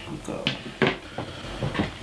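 A few light knocks and clicks of small objects being handled on a table, about five in all, spread through the two seconds.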